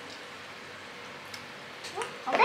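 Satay skewers sizzling on an electric table grill, a steady hiss, with a couple of faint clicks in the second half as sauce is brushed onto the meat.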